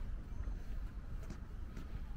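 Low, fluctuating rumble of wind buffeting the microphone outdoors, with a few faint soft ticks that may be the walker's footsteps.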